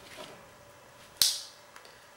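A single sharp metallic click about a second in, with a short ringing tail: a folding tool on a cheap 13-function pocket multi-tool snapping into place.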